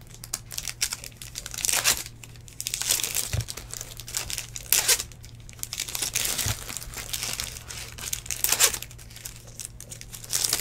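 Trading-card pack wrappers crinkling and tearing, with cards being handled, in short bursts every second or two. A few soft knocks, and a steady low hum underneath.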